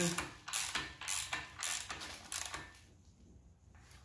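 Ratchet wrench on the crankshaft bolt of an Audi 2.0T engine, worked in short strokes about twice a second to turn the crank over by hand while lining up the timing and balance-shaft chain marks; the strokes stop a little over halfway through.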